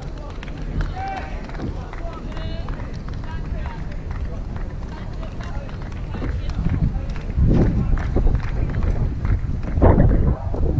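Outdoor ambience at a tennis court between points: scattered spectator voices over a steady low wind rumble on the microphone, with a few louder knocks near the end.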